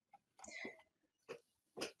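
Near silence on an online-meeting microphone, broken by a few faint breath and mouth sounds, the last a short in-breath just before the end.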